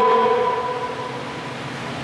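A man's voice through a microphone and loudspeaker, holding one long steady-pitched vowel that fades out about half a second in, then a pause with reverberant room noise.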